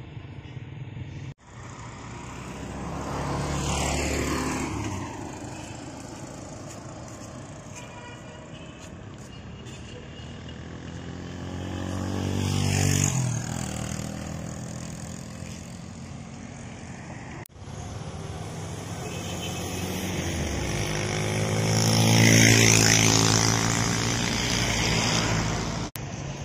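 Motor vehicles driving past on a road, one after another: three passes, each swelling up and fading away with its pitch falling as it goes by. The last pass, near the end, is the loudest.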